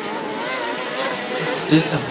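500 cc kart-cross karts' engines running hard around the dirt track, their pitch wavering up and down as they rev through the corners.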